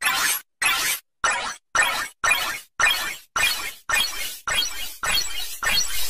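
A distorted shattering, crashing sound effect repeated in quick stutters, about two a second, each burst starting loud and fading; near the end the bursts run almost together.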